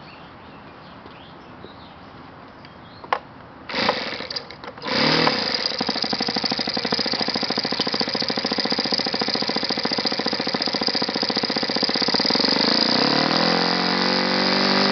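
YS FZ70-S single-cylinder four-stroke glow engine starting: a click about three seconds in, a brief ragged sputter as it first fires, then it catches about five seconds in and runs steadily and loudly with the propeller turning, its pitch shifting slightly near the end.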